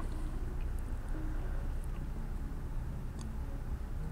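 Steady low machine hum in the background, with a few faint ticks.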